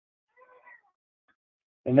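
An infant's brief, faint vocalization, a small coo or squeal, about half a second in.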